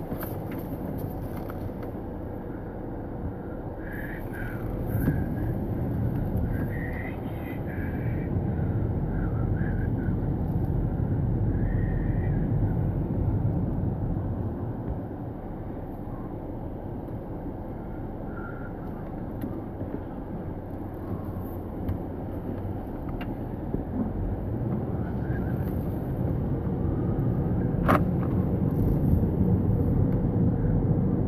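Engine and road noise inside a moving car's cabin: a steady low rumble that grows louder and eases off again. A short sharp click sounds near the end.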